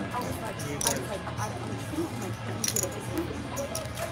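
Casino table-game ambience: a steady murmur of background chatter, with a few light clicks as playing cards and chips are handled on the felt.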